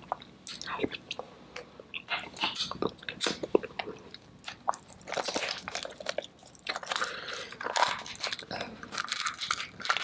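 Close-miked eating: wet chewing and biting of sauce-coated seafood, with many sharp, irregular mouth clicks and smacks that come thickest in the second half.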